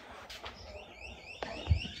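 A rapid run of short rising electronic chirps, about six a second, lasting roughly a second, followed by a single click.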